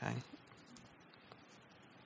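A man's voice trails off in the first moment, then quiet room tone through his headset microphone.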